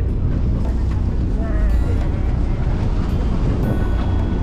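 Steady, loud low rumble of wind and choppy sea on a small fishing boat in rough water.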